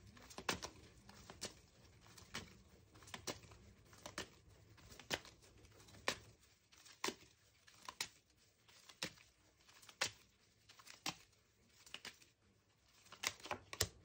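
Tarot cards being shuffled by hand, faint, with a sharp card snap about once a second over soft rustling. A quick cluster of card sounds comes near the end as a card is drawn and laid down.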